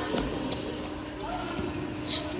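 A basketball bouncing on a hardwood gym floor, a few separate thuds, with voices faintly in the background.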